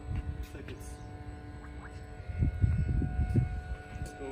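The battery-powered Water Tech Volt FX-8Li pool vacuum running under water, giving a steady faint hum. A spell of low rumbling comes about two seconds in.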